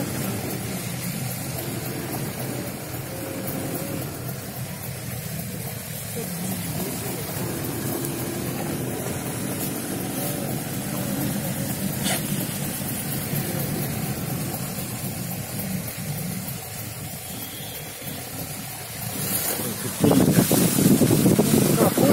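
Steady rumble of a car driving on a snowy road, engine and tyre noise heard from inside the cabin. About two seconds before the end, a sudden, much louder rush of noise comes in.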